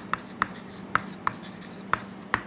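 Chalk writing on a blackboard: about five sharp taps of the chalk against the board, with short scratches between them. A faint steady hum runs beneath.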